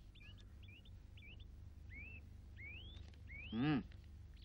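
Faint bird calls: several short chirps, then three rising whistled notes about two-thirds of a second apart, over a steady low hum. A short spoken word near the end is the loudest sound.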